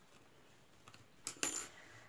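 A metal crochet hook set down on a table: a brief, light metallic clink about a second and a half in, after a near-silent start.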